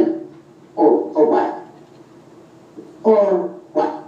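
Short, broken bursts of a person's voice, a few brief utterances about a second in and again near the end.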